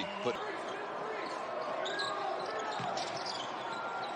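Court sound of a basketball game in a largely empty arena: a ball bouncing on the hardwood floor amid the hall's steady background noise and faint voices.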